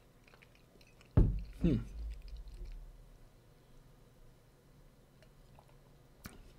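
A man chewing soft mozzarella cheese while tasting wine. About a second in there is a low thump, then a short hummed "mmm", and faint mouth sounds fade out soon after.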